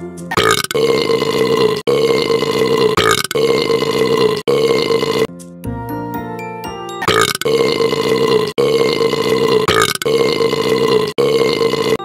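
A run of long, drawn-out human burps, each held at one steady pitch for about a second, following one after another in place of the sung lyrics over a children's song's music. There is a break of about two seconds in the middle where only the music plays.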